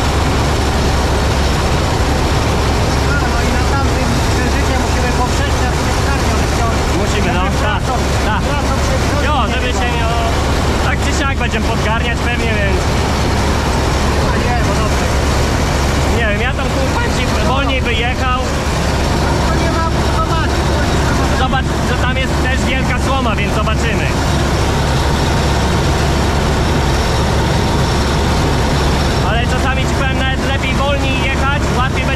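Massey Ferguson 86 combine harvester running steadily under load while harvesting, heard from inside its cab: a constant loud, deep engine and machinery drone that never changes over the whole stretch.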